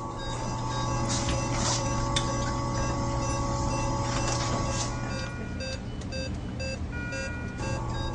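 Medical equipment alarms beeping: short electronic tones at several pitches repeat a few times a second, most densely in the second half, over a steady equipment hum. They come as the simulated ECMO centrifugal pump has failed and the patient is decompensating.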